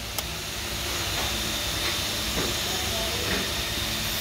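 Steady hissing noise with a faint high whine and a low hum under it, and a single short click just after the start.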